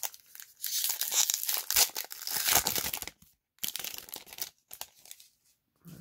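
Magic: The Gathering booster pack's foil wrapper being torn open and crinkled: about two and a half seconds of tearing and crackling, then a shorter burst of crinkling about a second later.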